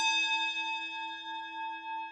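A single bell-like chime struck once, ringing on in a clear, sustained tone that slowly fades.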